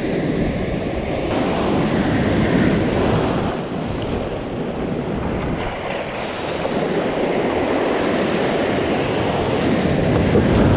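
Ocean waves breaking and whitewater washing over shallow rocks, a steady rushing surf that swells and eases.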